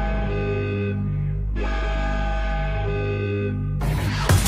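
Drum and bass breakdown without drums: sustained melodic chords over a deep, steady bass, in a phrase played twice. The full drum beat comes back in just at the end.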